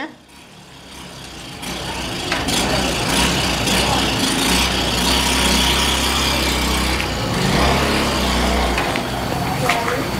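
A steady, low, heavy engine noise with a hiss above it. It swells in over the first two seconds and eases slightly near the end.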